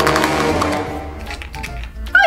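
Background music: a held chord that slowly fades, with a few light clicks near the start.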